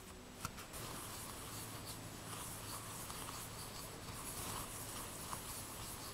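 Silicone spatula stirring and scraping dry flour and shortening in a mixing bowl: a faint, steady scratchy rubbing.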